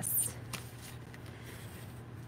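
Card paper rustling as it is slid and handled on a cutting mat, a short rustle right at the start, then a faint tap, over a low steady hum.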